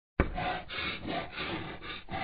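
Rough scratching, scraping strokes, about five in quick succession, as a sound effect for the logo being drawn. It starts with a sharp onset and cuts off suddenly.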